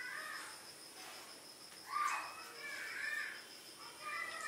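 A bird calling a few times with short arched calls, the loudest about two seconds in, over a faint steady high-pitched tone.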